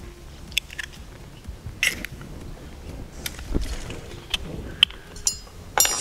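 Scattered light clicks and taps of an egg being cracked and emptied by hand into a plastic bowl, with a quick cluster of clicks near the end as a plastic bottle of sunflower oil is picked up.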